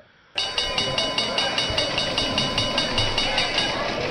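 Segment-intro stinger for the show's trading section: a rapid, even clatter of about five beats a second with held tones over it, starting about a third of a second in and running steadily.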